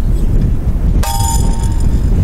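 A single sharp metal clang about a second in, ringing on for about a second, as a steel shovel and a pronged digging tool knock together. Wind rumbles on the microphone throughout.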